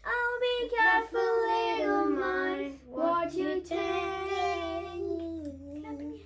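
Children singing a Sunday-school song in two phrases, the second ending on a long held note that fades out at the end.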